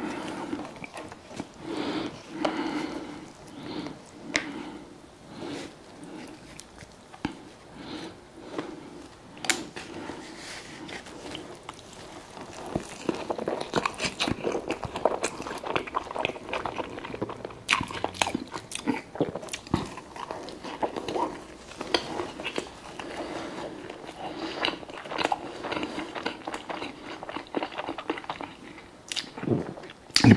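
Close-miked eating of a club gyro sandwich and fries: bites and steady chewing, with many small wet mouth clicks.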